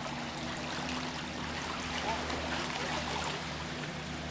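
Small waves lapping and trickling among shoreline rocks, over a steady low hum.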